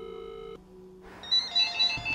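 Cordless phone ringing with an electronic ringtone of short repeated beeps, starting about a second and a half in. A held note of background piano music dies away just before.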